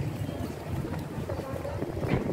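Wind buffeting the microphone as a steady low rumble, with faint voices of people in the background.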